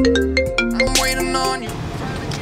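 Mobile phone ringtone: a quick, bright melody of short plucked, marimba-like notes. It cuts off near the end as the call is answered.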